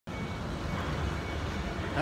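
Steady outdoor background noise, a low rumble with a hiss over it.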